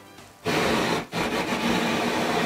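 Handheld kitchen blowtorch flame hissing as it chars onions in a pan; the hiss starts about half a second in, breaks off briefly around a second in, then runs on steadily.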